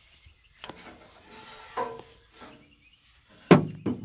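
Scattered clunks and knocks of trailer hookup gear being handled around a pickup bed and gooseneck hitch. The loudest is a single sharp knock about three and a half seconds in, followed by a couple of smaller ones.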